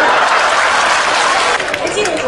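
Theatre audience applauding, a dense spread of clapping and crowd noise that eases off near the end.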